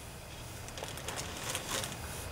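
Quiet room tone with a low steady hum and a few faint light clicks and rustles, as of a small plastic-and-metal part being handled.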